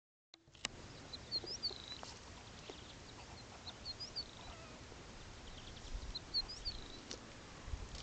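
A small bird's short phrase of a few quick high notes, repeated three times about two and a half seconds apart, faint over a quiet open-air background. A single click at the very start.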